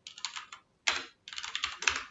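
Computer keyboard typing: three quick runs of keystrokes with short pauses between them.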